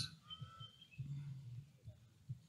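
Faint bird calls: short, clear whistled notes in the first second, with a brief low hum about a second in.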